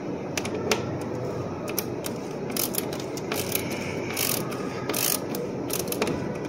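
Ratcheting offset service wrench clicking as it turns a 3/8"-16 plug tap cutting threads into the steel freezer door frame, in short irregular runs over a steady low background hum.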